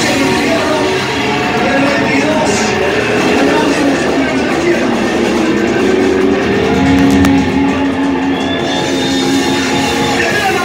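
Live heavy-metal band playing the close of a song, loud electric guitars and keyboard holding long chords.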